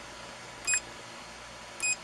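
Creality CR-6's stock DWIN touchscreen display beeping as its buttons are tapped: two short, high beeps a little over a second apart.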